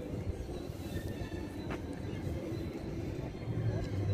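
Steady low rumble of outdoor city ambience, with a faint click a little under two seconds in.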